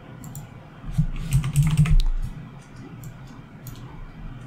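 Keys tapped on a computer keyboard, a string of short clicks as a search word is typed into a software search field, with a low, muffled sound about a second in.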